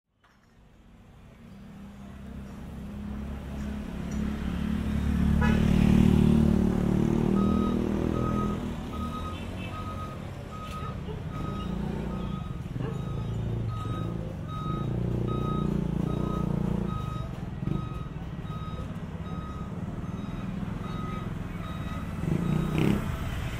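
Street traffic fading in: motor vehicle engines running and passing close, loudest about six seconds in. From about seven seconds in, a steady electronic beeping repeats about one and a half times a second, like a vehicle's reversing alarm.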